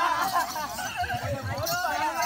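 Several performers' voices overlapping in high, wavering cries, with a few low drum beats about a second in.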